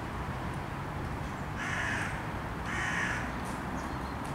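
A bird giving two harsh calls, each about half a second long and about a second apart, over a steady low background noise.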